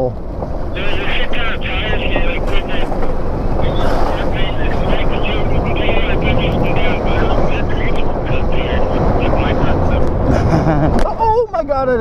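Wind buffeting the microphone and tyres rolling over a rough dirt trail as an electric bike is ridden along, with a fast uneven rattle from about a second in. A man's voice comes in near the end.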